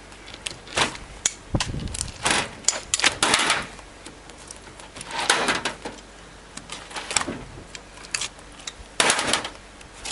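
Irregular clicks, taps and short scrapes from a hand tool and gloved hands working a skinned skate wing on a cutting board, trimming away leftover thorns.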